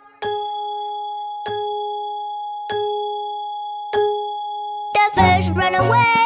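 A clock bell chiming four times, evenly about a second and a quarter apart, each strike ringing on until the next: the clock striking four o'clock. Children's song music comes back in near the end.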